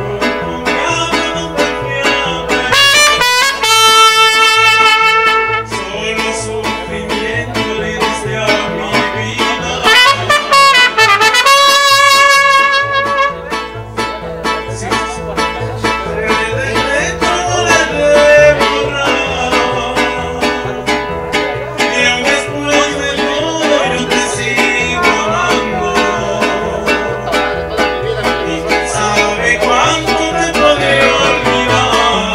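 Live mariachi band playing an instrumental passage: guitars, vihuela and guitarrón keep a steady strummed beat under violins and trumpets. The trumpets play loud held phrases about three seconds in and again about ten seconds in.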